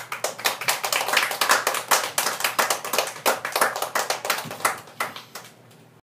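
Audience applause: many hands clapping densely, starting suddenly and thinning out to a few last claps near the end.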